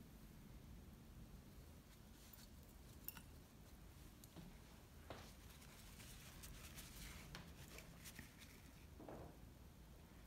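Near silence: room tone with a few faint clicks, the clearest about three seconds in, and faint rustling of small objects being handled on the table.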